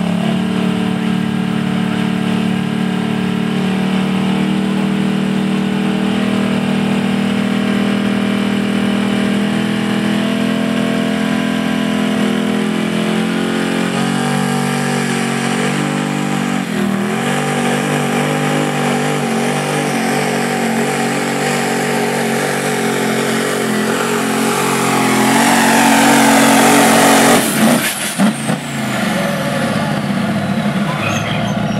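Pro mod diesel pulling truck's engine held at high, steady revs, then revving up and down and building to loud full-throttle running with black smoke. Near the end the throttle is cut suddenly and the engine drops away, leaving a high whistle falling in pitch.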